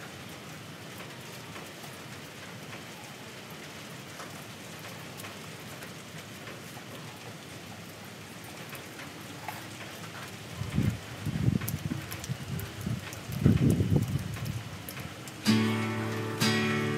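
Steady rain falling, with faint drip ticks. About two-thirds of the way through come a few loud, low rumbles, and just before the end background guitar music begins.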